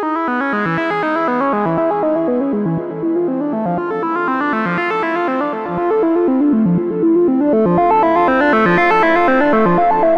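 GForce Oberheim SEM software synthesizer playing a fast sequenced run of notes on its "Appearing Vessel" preset. The tone brightens and darkens in slow waves about every four seconds, and it gets louder about six seconds in, as oscillator 1 is set to a square wave.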